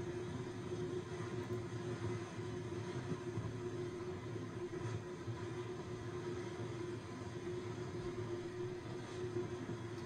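Corded electric hair clippers running with a steady hum while cutting a man's hair.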